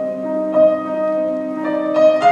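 Piano trio playing classical chamber music: violin and cello holding bowed notes over piano, the notes changing about every second.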